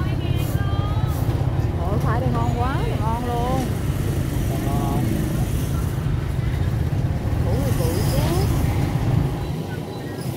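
Motorbike engines running in a steady low rumble through a busy street market, with voices talking and calling out over it every few seconds.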